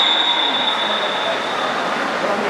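A referee's whistle blown in one long, steady, high blast that cuts off shortly before the end, over background crowd noise from the pool.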